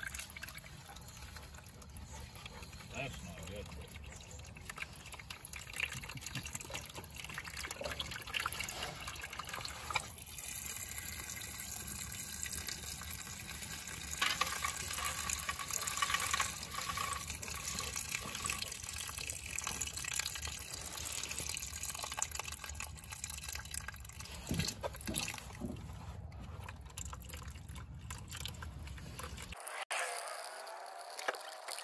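Water pouring in a steady stream from the drain hole of a Wheel Horse lawn tractor casting and splashing into a plastic drain pan. The housing was holding water instead of oil.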